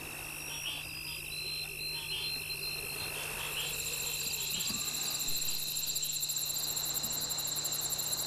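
Insects, crickets among them, chirring in a steady chorus of high trills. A faster, higher pulsing trill joins about three and a half seconds in, and the chorus grows slowly louder.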